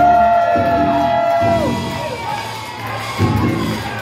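Music playing over the PA in a hall, with a small crowd cheering and yelling. Held notes fall away about halfway through, and the cheering swells near the end.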